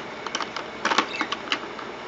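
Plastic makeup tubes clicking and rattling against each other and a clear plastic storage drawer as a hand sorts through them: a scatter of small clicks, with a quick cluster about a second in.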